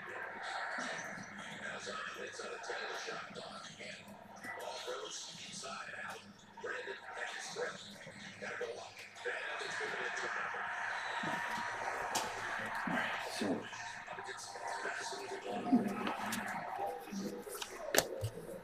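Low, indistinct talking, with soft taps and rustles of trading cards being handled, more of them near the end.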